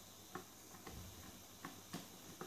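A few faint ticks and clicks of a screwdriver turning a terminal screw on the back of a wall switch, clamping a wire.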